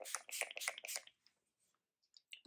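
Urban Decay All Nighter setting spray pumped onto the face in a quick run of short hissing spritzes through about the first second, then stopping.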